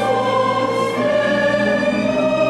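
A Christmas song's choral passage: a choir singing long held chords over musical accompaniment.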